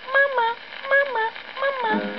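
A 1930s 78 rpm dance-band record playing on a horn gramophone: a break in the music filled with about five short, high-pitched calls imitating talking dolls, each call dipping and rising in pitch, while the band's lower accompaniment drops out.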